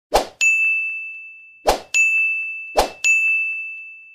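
Sound effects of an animated subscribe end screen: three times, a short pop followed by a bright bell-like ding that rings on and fades away.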